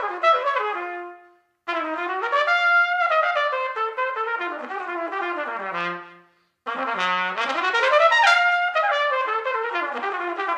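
Solo trumpet playing fast jazz lines of quick notes that run up and down. A phrase ends about a second in, and after a brief silence a second phrase plays. It stops just after six seconds, and a third begins soon after.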